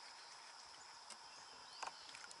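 Near silence: faint outdoor background with a steady high faint tone, and a few soft clicks near the end.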